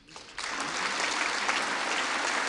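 Large audience applauding, breaking out about half a second in and holding steady.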